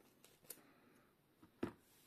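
Faint snips and crinkles of a small plastic parts bag being cut open with scissors, with a sharper click about half a second in and another near the end.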